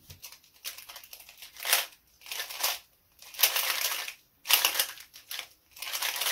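Plastic Square-1 puzzle being turned by hand: scraping and clicking of the layers as they slide, in short runs of half a second to a second with brief pauses between.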